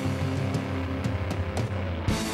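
Live rock band playing an instrumental passage: sustained distorted electric guitar and bass over drums, with cymbal strikes cutting through.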